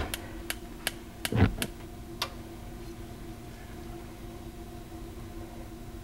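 Gas cooktop's spark igniter ticking about six times in quick, even succession over the first two seconds as the burner is lit, then a faint steady hum.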